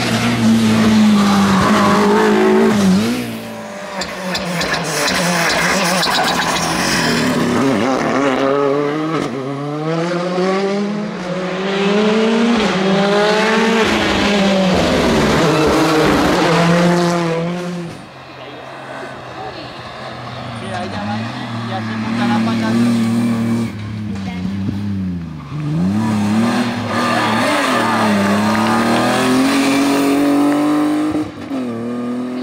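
Rally cars on a tarmac stage passing one after another, engines revving high and dropping again and again through gear changes as they brake into and accelerate out of tight bends. The engine sound drops away briefly a little past the middle before the next car comes through.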